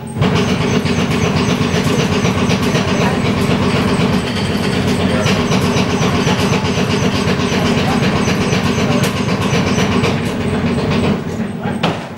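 Earthquake simulator running: a loud, dense rumble with constant rattling that starts suddenly and dies away about eleven seconds in.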